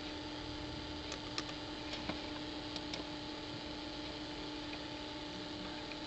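A few faint, scattered computer keyboard keystrokes and clicks in the first three seconds, over a steady electrical hum.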